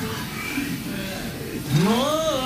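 Anime dialogue playing from the episode with music under it: a quiet spoken line, then a loud exclaimed line that rises in pitch near the end.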